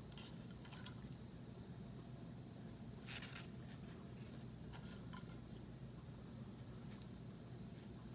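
Fork scraping and prodding tuna in a metal can: a few faint scrapes and clicks, the loudest about three seconds in, over a steady low hum.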